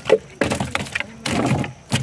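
A freshly caught fish lands in a wooden boat and thrashes. Its body slaps and knocks on the boat's wooden bottom, with one sharp knock just after the start and then a run of quicker knocks.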